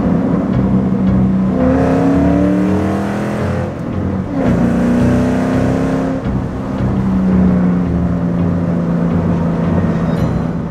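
A 2006 Mustang GT's 4.6-litre three-valve V8, fitted with a Roush cold air intake, heard from inside the cabin while driving. The engine note rises in pitch twice, with a drop between them about four seconds in, and then settles to a steady cruise.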